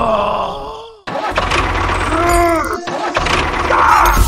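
Tractor engine sound effect, a low rumble that cuts out about a second in and picks up again. Over it come pitched sounds that slide down in pitch: one at the start and one that rises and falls about two seconds in.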